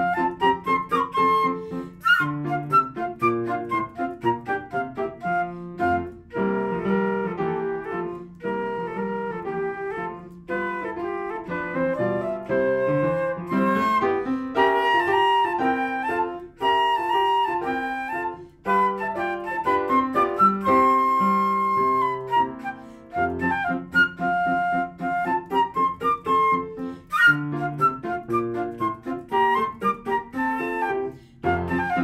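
Concert flute playing a melody of quick, short notes with a few held notes, over upright piano accompaniment.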